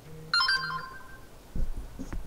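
A short electronic chime, like a computer notification sound, rings out and fades within about half a second. A low rumbling noise rises near the end.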